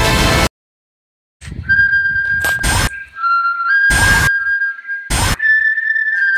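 Loud trailer music cuts off abruptly about half a second in. After a second of silence a slow whistled tune of long held notes begins, broken by four short, sharp knocks.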